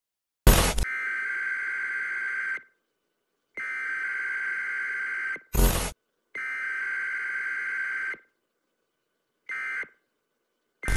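Electronic sound effects: a sharp noisy burst about half a second in, then three long steady buzzing beeps of about two seconds each, with another short burst between the second and third beep and a brief one near the end.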